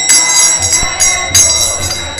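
Small brass hand cymbals (kartals) struck again and again, each clash leaving a high metallic ring that carries on between strokes.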